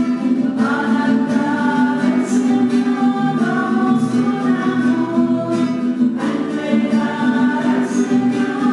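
Hymn sung by a group of voices with guitar accompaniment, long held notes; new phrases begin about half a second in and again about six seconds in.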